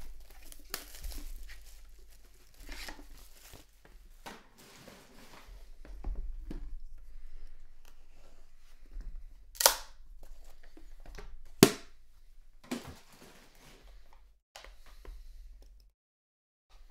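Plastic shrink-wrap crinkling and tearing as it is pulled off a sealed trading card box, in uneven rustling bursts. In the second half come a few sharp snaps, the two loudest about two seconds apart.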